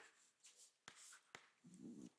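Near silence, with a few faint taps and scrapes of chalk writing on a blackboard.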